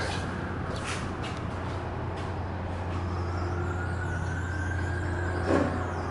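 Steady low machine hum with a few light clicks. In the second half a faint rising whine builds as the Otis Series 1 elevator's doors begin to close, and a thump comes about five and a half seconds in.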